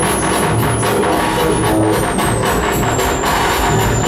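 Live electronic music played on synthesizers: a steady pulsing beat, about four pulses a second over a pulsing bass, with a thin high tone that slides down in pitch from about halfway through.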